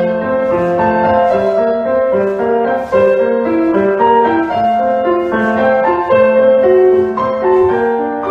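Solo piano accompaniment for a ballet barre exercise, a steady, unbroken run of melody over lower notes.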